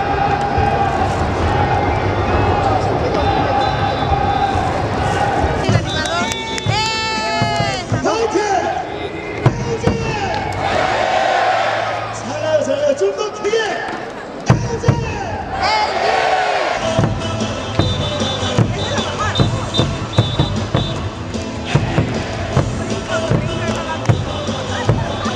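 Music and an amplified voice over a stadium's loudspeakers, with drum beats in the second half.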